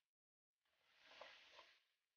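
Near silence, with a faint, short patch of noise and a couple of small clicks about a second in.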